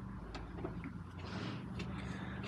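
Faint ticks and light rustling of a hand screwdriver turning out a Torx screw, over a steady low hum.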